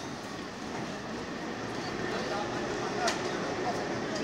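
Vintage electric tram creeping slowly along its rails up to a stop, with the low chatter of waiting people over it and a single sharp click about three seconds in.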